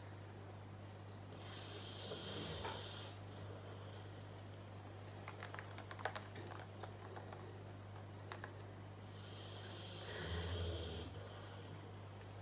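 Quiet handling of a paint-covered canvas being tilted on its supports: a few light clicks and taps around the middle, and two soft breath-like sounds about a second and a half long, over a steady low hum.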